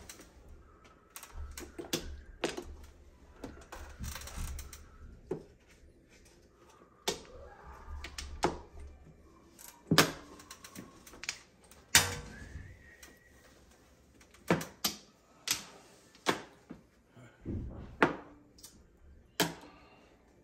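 Mahjong tiles clacking as they are drawn and discarded on the table: a dozen or so sharp, irregular clicks, the loudest about ten and twelve seconds in.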